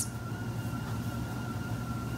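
Steady background hum with a thin, constant high tone above it and no distinct events: room tone.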